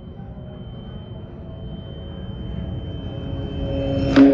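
A low rumbling noise swelling steadily louder, with a thin, steady high-pitched tone over it.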